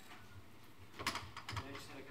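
Faint room hiss, then a cluster of quick clicks and taps about a second in, with faint voices in the room.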